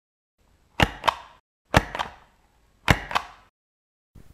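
Three pairs of sharp hits, each pair about a quarter of a second apart and each hit fading with a short ringing tail, coming about once a second.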